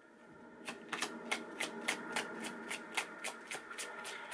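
Tarot cards being shuffled by hand, a quick even run of soft card slaps about five a second, starting just under a second in.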